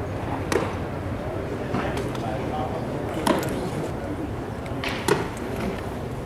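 A pitched baseball smacks into the catcher's mitt about half a second in, followed by a few more sharp smacks of ball on leather later on. Voices of spectators chatter in the background.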